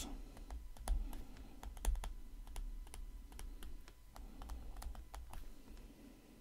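Faint, irregular light clicks and taps of a stylus on a tablet screen as words are handwritten, over a low steady hum.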